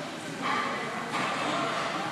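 A person breathing hard through a kettlebell snatch: one long, noisy breath that starts about half a second in.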